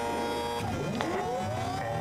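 Quest Kodiak 100's Pratt & Whitney PT6A-34 turboprop being started. The starter spins up the gas generator in a whine that rises smoothly in pitch from about half a second in, over a low steady hum.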